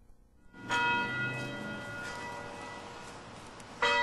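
Church steeple bell tolling: one stroke under a second in, its ring slowly fading, then a second stroke near the end. A slow memorial toll, one stroke for each of the town's Civil War dead.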